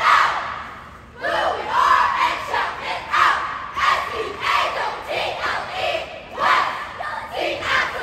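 Cheerleading squad shouting a chant in unison, a steady series of loud, clipped shouts echoing in a large gym.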